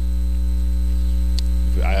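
Loud, steady electrical mains hum with a ladder of even overtones, carried in the audio of a corded handheld microphone; a single faint click about one and a half seconds in, and a voice starts near the end.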